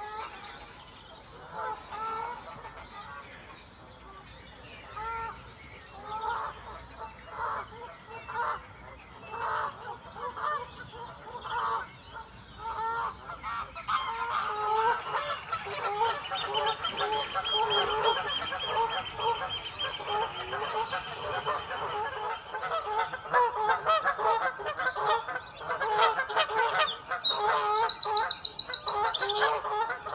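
Canada geese honking repeatedly. From about halfway through, oystercatchers join in with a long run of shrill piping. Near the end a wren sings a loud, very high, fast trill, the loudest sound here.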